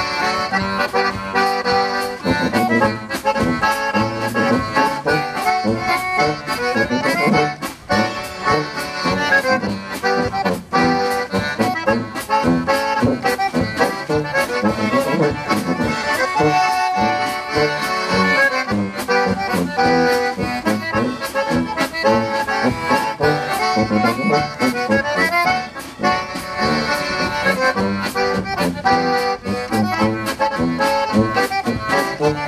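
Button concertina playing an old-time dance tune with a tuba on the bass line and a drum kit keeping time.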